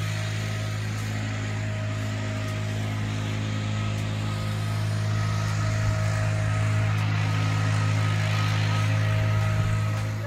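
A steady, low engine-like drone with a few faint steady tones above it and a hiss over it.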